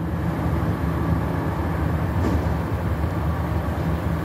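A vehicle engine running steadily with a low, even rumble.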